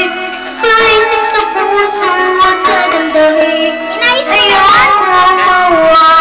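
A high voice singing a melody over instrumental backing music.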